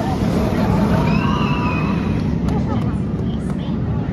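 Steel roller coaster train running along its track with a steady low rumble, with faint voices in the background.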